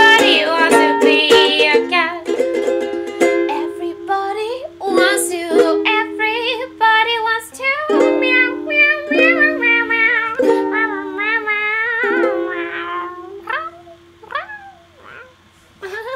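Ukulele strummed and picked in a jazzy tune, with a wordless sung melody wavering over it. The playing thins out and trails off near the end as the song finishes.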